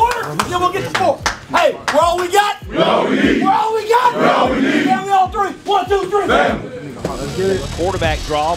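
A football team and its coach yelling together in a tight huddle, a rallying roar of many voices. Sharp claps and slaps come in the first couple of seconds.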